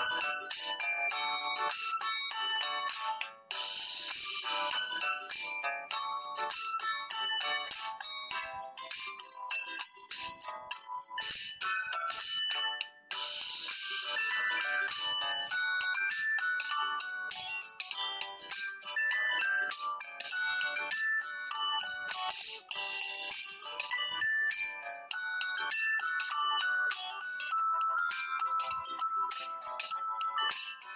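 Background instrumental music: a quick melody of short, high notes with little bass.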